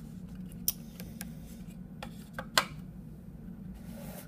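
Several sharp clicks and taps of plastic model-kit parts being picked up, moved and set down on a tabletop, the loudest about two and a half seconds in.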